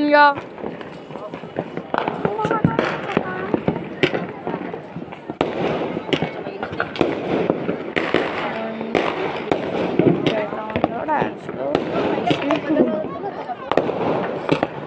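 Firecrackers going off, with many short sharp cracks and pops at irregular intervals, under people's voices talking.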